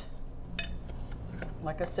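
Metal spoon stirring pie filling in a stoneware mixing bowl, with a few light clinks of spoon against the bowl.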